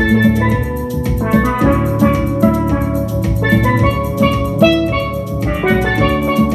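A pair of steel pans played with mallets, ringing out a melody of quick notes over a steady drum beat and bass.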